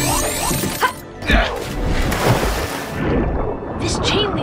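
Cartoon sound effects over background music: a rising, shimmering whoosh of a suit-up transformation, then a little over a second in a sudden splash into water, followed by a bubbling underwater wash.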